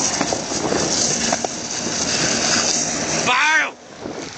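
Skateboard wheels rolling fast downhill on asphalt, with wind noise: a loud, steady rough rumble. Near the end comes a short pitched cry that wavers up and down, and then the noise drops away suddenly.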